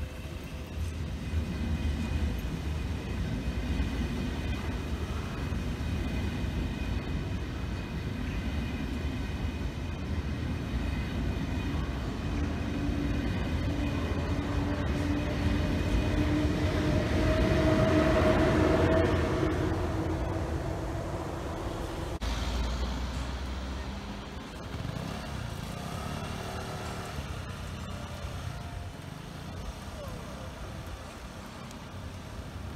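ÖBB Railjet passenger train passing a level crossing, wheels running on the rails with a rising and falling hum. It gets louder to a peak about two-thirds of the way through, then the sound breaks off as the last coach clears.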